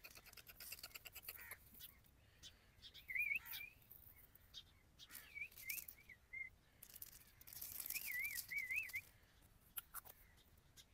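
Dry seed rattling out of a container in a fast patter for the first second or so, then scattering with light rustles onto cardboard and soil. Three short whistled calls, each wavering quickly up and down, come about three, five and eight seconds in.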